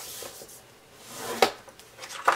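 Rounded-tip stylus drawn along a groove of a scoring board, pressing a score line into cardstock: a soft scraping rub that builds, then a sharp click about one and a half seconds in.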